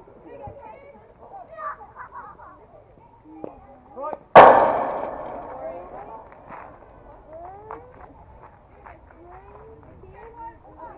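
A softball hitting the chain-link backstop fence: one loud, sharp bang about four and a half seconds in, with a rattle that dies away over about a second and a half.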